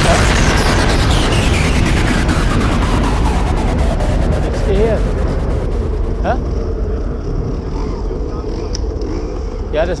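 Trial motorcycle engine running close by, its pitch falling over the first few seconds as the revs drop, with rapid clicks in the first half.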